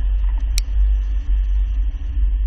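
A car driving through a slalom, heard from a camera mounted outside at its rear hitch: a steady, heavy low rumble of wind and road noise. One short click about half a second in.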